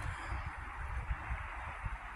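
Steady outdoor ambience: an even hiss with an uneven low rumble of wind on the microphone.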